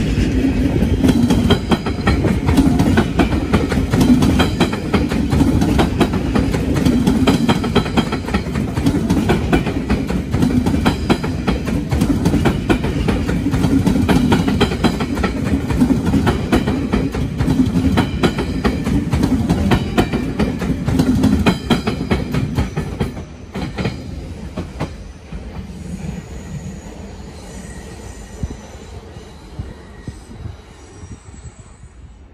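Passenger train passing at close range: a loud, steady rumble and rattle of wheels on rails with rapid clicking. It drops away suddenly about 23 seconds in as the last coach goes by, and the sound fades after that.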